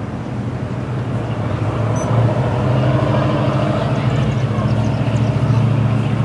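Road traffic passing close by: the low, steady running of a motor vehicle's engine, growing louder about two seconds in and staying loud.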